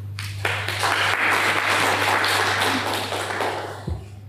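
A small audience applauding for about three seconds, then dying away, over a steady low electrical hum.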